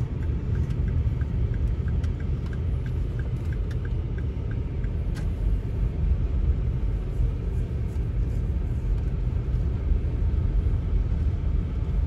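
A car driving along town streets: a steady low rumble of engine and road noise, with faint regular ticking over the first few seconds.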